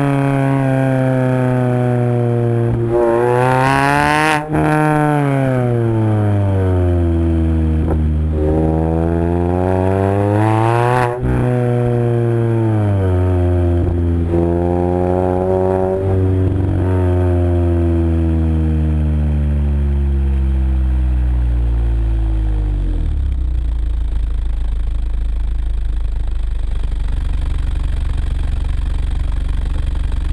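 Car exhaust with a long-tube header and custom-baffled dual tips, heard at the tailpipes. The engine is revved up and let fall twice, then the revs drop slowly and settle into a steady idle about two-thirds of the way through.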